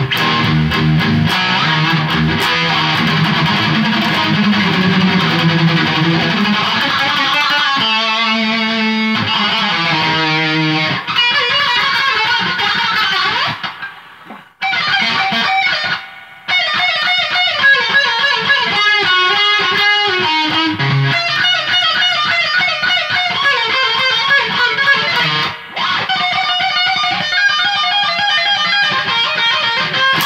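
Stratocaster-style electric guitar being played: a continuous run of single notes and held notes, with a couple of short breaks about halfway through.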